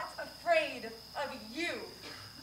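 Crickets trilling in a steady, high, unbroken tone, under a woman's voice in two short vocal phrases that slide up and down in pitch.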